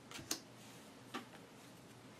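A playing card being set down and tapped onto the table, giving short sharp clicks: two close together near the start and another about a second in.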